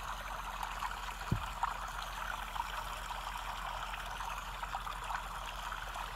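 Background white-noise track playing: a steady, even, watery hiss. A faint soft bump about a second and a half in.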